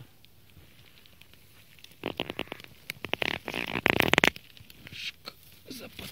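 Dry leaf litter and twigs on the forest floor crackling and rustling as they are disturbed: a burst starting about two seconds in and lasting about two seconds, loudest near its end, then a few faint clicks.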